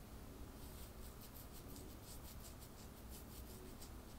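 Faint, rapid scratching, about seven soft strokes a second: fingers rubbing across a stubbly chin, heard over quiet room tone.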